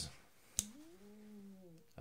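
A slipjoint pocketknife blade, on a Case trapper, snapping open with a single sharp click about half a second in. A faint tone of about a second follows, rising and then falling in pitch.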